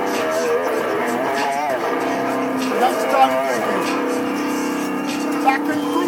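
Electric guitar being played, with long held notes through the middle, under a wavering, wordless voice.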